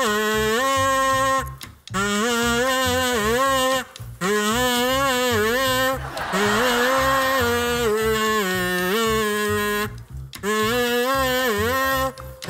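A gold plastic toy trumpet blown as a melody clue. It plays a wavering tune in short phrases, the pitch sliding between notes, with brief breaks between phrases.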